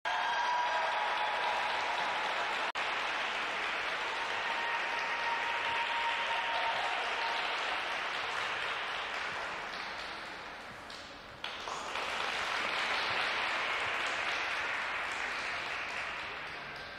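Audience in an ice rink applauding steadily; the applause thins out around ten seconds in, then picks up again abruptly.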